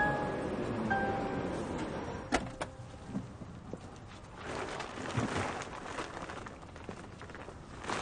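A few chime-like music notes die away in the first second. About two seconds in come two sharp clunks from the car's tailgate, and from about halfway a rustling as a checked woven plastic bag is handled and lifted out of the boot.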